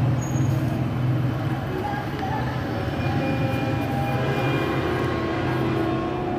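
A steady low rumble with a hum, mechanical in kind, with faint held tones in the middle range.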